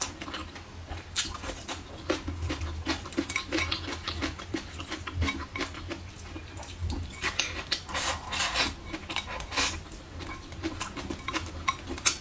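Chewing and eating of braised pork and rice, with wooden chopsticks repeatedly clicking and scraping against a ceramic bowl.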